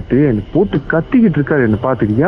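Speech only: a caller talking, the voice thin and cut off at the top as over a phone line.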